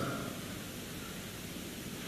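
Steady hiss of the recording's background noise during a short pause in the speech.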